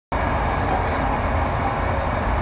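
Steady running noise of a passenger train heard from inside the carriage: a low rumble from the wheels on the rails with a rushing hiss on top.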